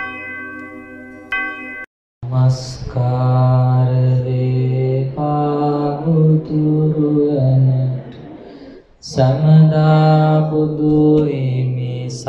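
A bell-like ringing tone, struck again just after a second in, cuts off near two seconds. A man's voice then chants Buddhist verses in long, slow, held notes, pausing briefly near the end before going on.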